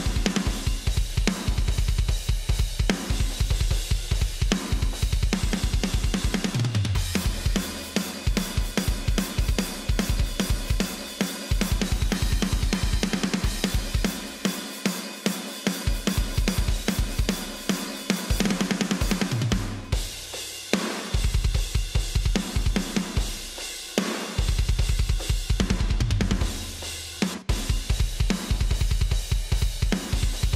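A metal drum kit multitrack plays back through a heavily compressed drum bus, with the snare turned way down. A fast, relentless kick drum runs under cymbals and hi-hat, with a few brief breaks where low fills fall in pitch.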